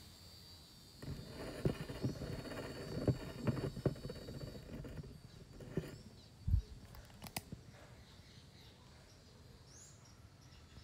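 Handling noise from the phone that is filming: rustling and irregular knocks as it is picked up and repositioned, a low thump about six and a half seconds in, and a couple of sharp clicks just after.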